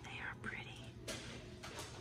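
A faint whispered voice, with a couple of light clicks in the second half.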